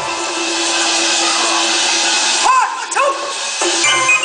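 Taiwanese opera fight-scene accompaniment: gongs and cymbals clashing in a dense wash over a held low instrumental tone. About two and a half seconds in, the clashing thins and two short rising-and-falling calls cut through before it picks up again.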